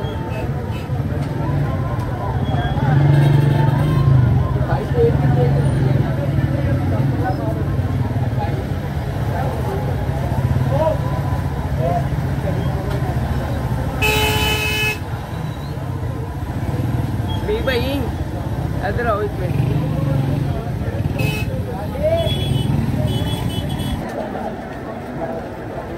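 Busy street-market ambience: a steady rumble of traffic under scattered passing voices, with a vehicle horn honking for about a second a little past the middle and short higher beeps near the end.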